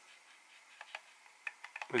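Gimbal sticks of a BetaFPV LiteRadio 2 prototype transmitter being pushed by thumb, giving a few faint ticks, most of them near the end. It is a little bit of strange noise from gimbals that are not super smooth, a little on the rough side.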